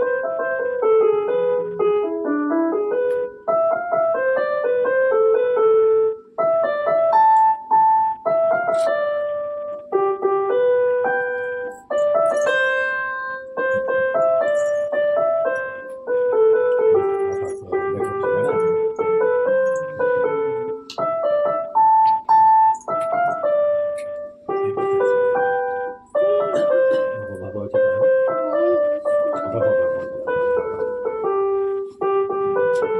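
Piano music: a melody of separate struck notes over a lower accompaniment, played without a break.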